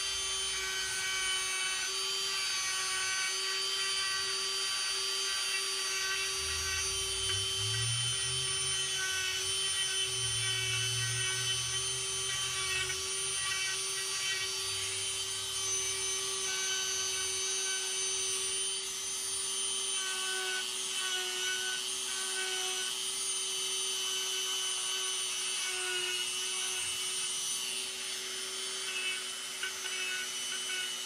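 Dremel rotary tool running at a steady pitch, its 1/8-inch cone-shaped Saburrtooth eye cutter bit grinding into poplar to cut a tighter crease around a carved eyelid.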